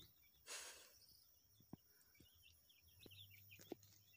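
Faint outdoor ambience with small birds chirping repeatedly, and a brief hiss about half a second in.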